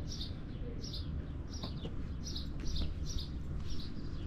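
A small bird chirping, short high chirps repeated about twice a second, over a low steady rumble.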